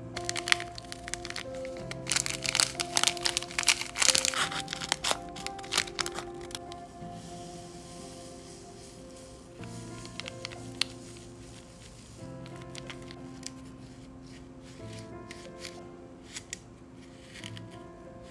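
Soft background piano music over the crinkling and crackling of a candy kit's plastic tray film and foil powder packets being handled, densest and loudest in the first six or seven seconds. Later come a few lighter clicks and scrapes as powder is poured into the plastic tray and stirred.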